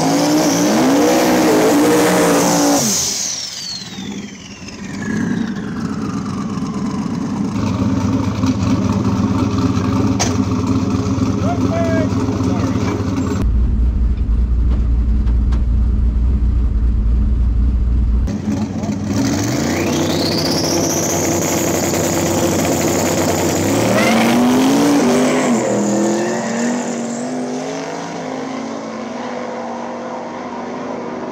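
No-prep drag race cars' engines revving hard and running at full throttle, the pitch climbing and falling as they rev. About halfway through there is a stretch of heavy, low engine drone heard from inside a car.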